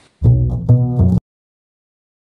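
Upright double bass plucked pizzicato: three notes of a bassline, cut off sharply just over a second in, with the start of a fourth note just audible before the cut.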